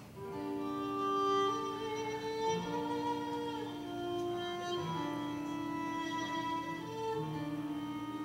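Violin and cello playing a slow introduction in long held notes, coming in together at the start, with vibrato on the held notes near the end.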